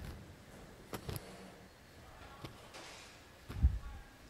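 Faint handling sounds as the ear loops of a disposable surgical mask are stretched hard: a couple of soft clicks about a second in, another a little later, and a low thump near the end.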